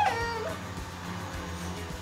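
A toy bead-drying fan running with a steady low hum, and a short, high, meow-like cry gliding in pitch right at the start.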